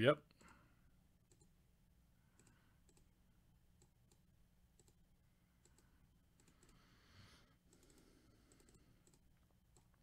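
Faint computer mouse clicks, single ticks scattered every second or so, over near silence.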